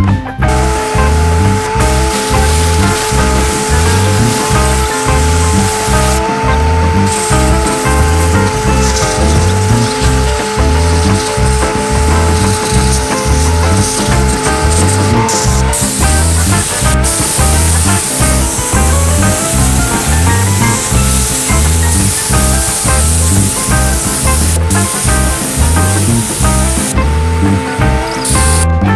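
Sandblaster hissing as abrasive is blasted against the bare sheet steel of a truck cab, stopping briefly about six seconds in and again near the end. Background music with a steady beat plays over it.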